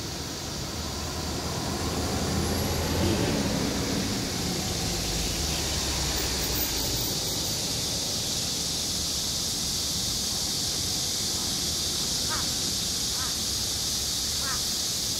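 Aircraft flying overhead: a broad, steady rumble that swells about two to three seconds in and stays up. Near the end, a few short, faint calls from the crow.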